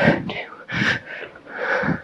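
A woman breathing hard in several quick, noisy breaths around a spoken count of "two": out of breath from jumping exercise.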